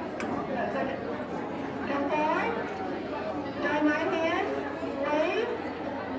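Indistinct crowd chatter in a large hall, with several voices talking over one another.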